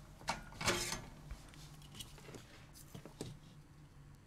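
Faint, scattered clicks and small knocks of hand tools and wires being handled on a wooden workbench, the loudest within the first second.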